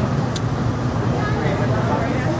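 Indistinct voices over a steady low hum, with one short sharp click about a third of a second in.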